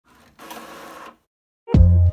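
An Epson inkjet printer runs briefly, a faint whirr of less than a second as it feeds out a printed sheet. After a short gap, louder background music with a strong bass starts near the end.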